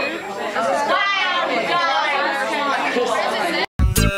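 Several people talking and chattering at once in a large room. Near the end the voices cut off and music with a strong beat starts.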